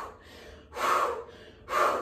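A woman's sharp, forceful breaths blown out through the mouth, twice, about a second apart, like blowing out a candle.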